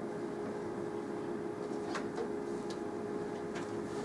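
Steady room tone: a constant low hum with a faint held tone, and a few faint light ticks about halfway through.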